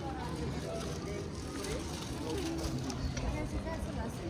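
Street ambience: faint voices of passers-by over a low, steady hum of traffic.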